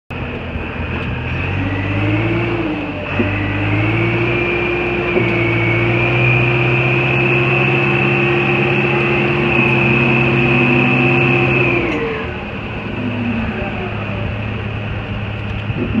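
Gehl DL10L55 telehandler's diesel engine running as the machine drives, picking up speed about two seconds in, holding steady, then easing off about twelve seconds in. A high whine rises and falls with the engine speed.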